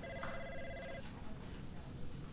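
A telephone ringing once: an electronic ring that stops about a second in, followed by low room noise.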